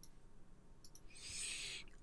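Faint computer mouse clicks while drawing lines, then a short soft intake of breath near the end, just before talking resumes.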